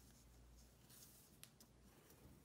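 Near silence with a faint rustle of cotton macrame cord being handled and pulled through a knot, including a brief brushing sound about halfway and a couple of faint ticks.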